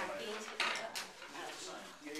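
Indistinct background chatter of several people in a classroom, mixed with light clattering clicks, the sharpest about half a second in.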